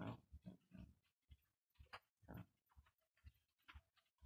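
Faint, short, irregular breathy sounds from a man, two or three a second: his breathing and mouth noises.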